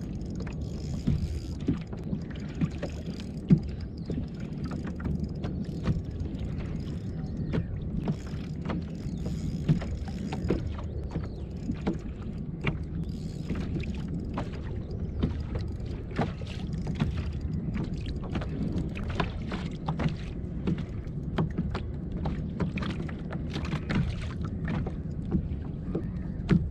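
Water lapping against a plastic fishing kayak's hull, with many small irregular knocks and clicks over a steady low rumble.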